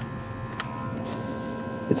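Low, steady hum inside a car's cabin as it rolls slowly, with a faint steady high whine running through it.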